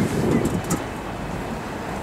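Steady background rumble of distant city traffic, with a brief voice at the very start.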